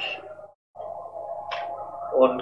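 A word of speech trails off, then after a brief dropout a steady electrical hum with a faint thin tone runs on, broken by one short hiss about one and a half seconds in.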